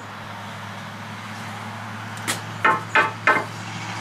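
A steady low hum, with four short knocks in quick succession in the second half.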